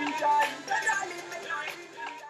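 Background music: a melody of held notes stepping up and down.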